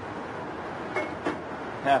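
An aluminium sauté pan set upside down over a perforated steel hotel pan used as a smoker, giving a light metal clink about a second in, over a steady background hiss.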